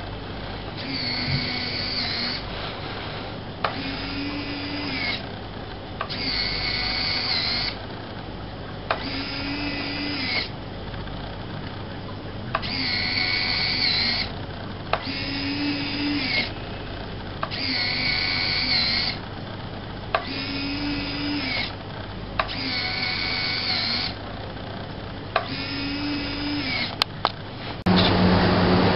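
Electric retract units of an RC model jet's 45-degree rotating main landing gear cycling up and down: about ten short whining motor runs, each about a second and a half long and starting every two and a half seconds, most of them starting with a sharp click.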